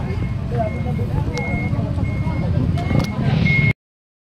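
A vehicle's reversing alarm beeping steadily, a single high tone repeating about every 0.7 seconds, over street noise and voices. The sound cuts off suddenly near the end.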